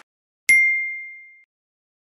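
A single bright ding, a bell-like sound effect for the subscribe end card, struck about half a second in and ringing out as one clear tone that fades away over about a second.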